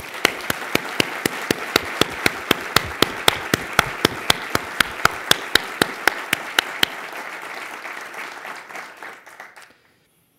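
Audience applauding, with one person's hand claps close to the microphone standing out in a steady rhythm of about three and a half claps a second. The close claps stop about seven seconds in, and the applause dies away about two seconds later.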